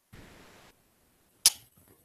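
A short scuffing noise lasting about half a second, then one sharp click about a second and a half in, followed by a few faint ticks.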